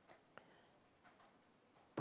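Near silence: room tone, with one faint click about a third of a second in.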